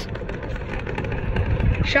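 Golf cart in motion: a steady, noisy ride rumble as the cart drives along, with an uneven low rumble underneath.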